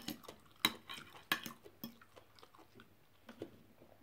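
A metal fork and spoon clicking and scraping on a plate while cutting up steamed squid, with soft chewing. The sharp clicks come mostly in the first two seconds and grow sparse after.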